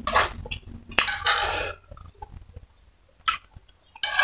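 Close-miked eating sounds of a person taking in and chewing black bean noodles: wet slurping and mouth smacking, loudest in the first two seconds, then quieter chewing with one sharp smack about three seconds in.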